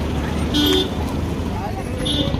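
A car driving slowly past close by, its engine and tyres making a steady low rumble. A short horn toot sounds about half a second in.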